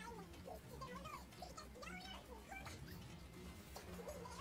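Faint voices talking in the background, over a low steady hum.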